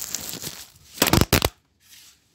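Handling noise of a camera phone being turned around: rubbing and rustling against the microphone, then a short cluster of loud knocks about a second in.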